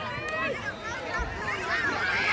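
Sideline crowd at a youth football game, several raised voices shouting at once and overlapping, with no clear words.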